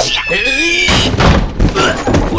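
Cartoon sound effects: short wordless vocal cries over a falling whistle, then a run of heavy thuds and bumps from about a second in, as a small character tumbles and lands on a wooden floor.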